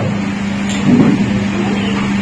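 A steady low hum over an even background rush, heard during a pause in a man's speech into a microphone.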